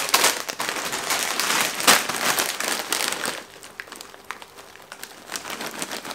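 Plastic snack bags of Funyuns crinkling as they are handled and lifted. The crinkling is dense and loud for the first three seconds or so, with one sharp crackle about two seconds in, then thins to scattered lighter crinkles.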